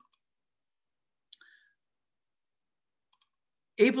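Near silence broken by a faint, short click about a second in and a fainter one near the end, as a man's voice starts.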